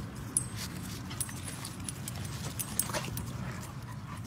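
Dogs whimpering, with scattered light clicks over a low steady rumble.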